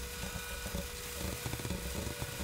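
Faint rubbing of a duster being wiped across a whiteboard, over a steady faint electrical hum.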